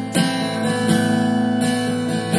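Live band music in an instrumental gap between vocal lines: guitar chords strummed about every three-quarters of a second over sustained notes and a steady low bass tone.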